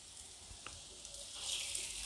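Hot oil sizzling faintly as urad dal bhallas deep-fry in a kadhai, getting louder about a second and a half in.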